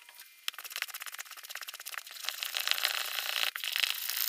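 Wooden spoon stirring thick sourdough pancake batter in a plastic bowl: a fast run of wet scraping and clicking against the bowl that starts about half a second in and gets louder as the mixing speeds up.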